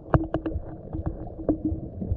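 Underwater sound picked up by a camera in a waterproof housing: a low, muffled rumble of moving water with a faint steady hum. A few sharp clicks come in the first half second and another about a second and a half in.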